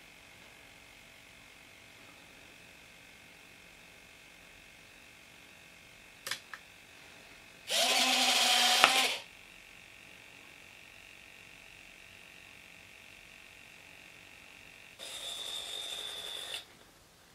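A couple of light clicks, then model-aircraft electric retracts whir for about a second and a half as the landing gear swings down. Near the end the gear door servos buzz briefly with a high whine as the doors move.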